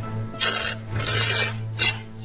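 A stiff paper towel being torn along a fold, with rasping tears in three short spells, the sharpest near the end.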